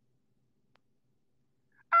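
Near silence, then near the end a man's voice cuts in loud, high-pitched and wavering, in a whining "I ain't...".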